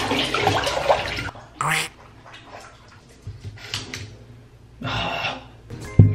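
Bathwater sloshing and splashing as a person steps into a filled bathtub and sits down. This is followed by a few short, separate splashes.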